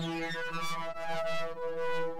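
Bitwig Polysynth software synthesizer sustaining a note, its upper tones sweeping and shifting as an ADSR envelope with a long attack modulates oscillator sync, sub-oscillator level and filter resonance, giving a harsh, aggressive tone.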